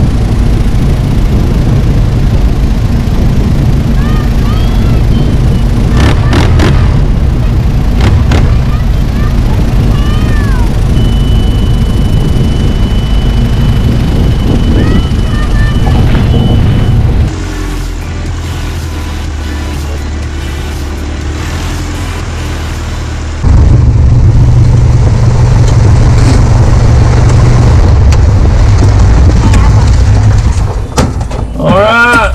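Light aircraft engine and propeller droning with wind rush as the Carbon Cub flies. Short yelps and squeals come over the drone in the first third. A steady high tone holds for about six seconds in the middle. The sound then drops quieter for about six seconds before returning loud.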